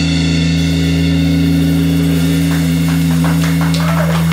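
A live electric band's closing chord held out: bass and electric guitar sustain one low, steady note. About halfway through, sharp hits come in and grow denser toward the end as the song finishes.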